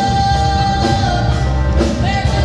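Live band playing 1970s pop-rock music with electric guitar, with a long held note through the first half.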